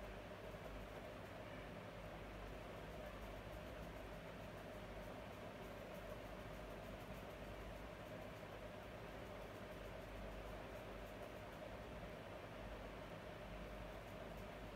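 Faint, steady background hiss with a low hum: room tone with no distinct events.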